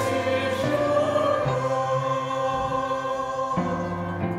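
A small mixed choir of men's and women's voices singing the introit in a church service, holding long notes that change chord about a second and a half in and again near the end.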